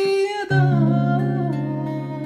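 A man singing a long held note over a Kepma acoustic guitar. About half a second in, a chord is strummed, his voice slides down in pitch, and the chord rings on.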